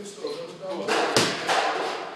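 Two punches landing on focus mitts, sharp smacks about a third of a second apart a little over a second in.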